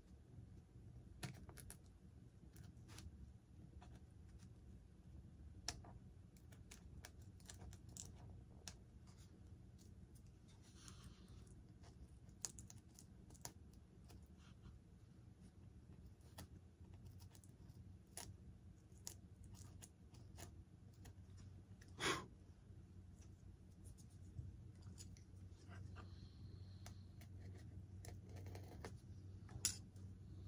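Faint, irregular small clicks and scratches of hands working a hobby blade and a thin wire lead into a channel cut in a foam model tail fin, with one sharper click about 22 seconds in.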